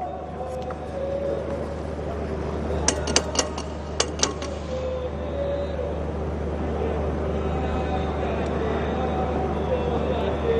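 Stadium pitch-side ambience with no crowd: a steady low hum and faint distant players' voices. A quick run of four sharp cracks comes about three seconds in, and two more follow a second later.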